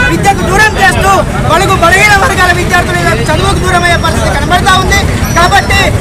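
A man speaking continuously, in Telugu, into reporters' microphones, over a steady low rumble of background noise.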